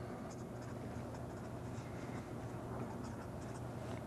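Marker pen writing on paper: faint, short scratching strokes as letters are drawn, over a steady low hum.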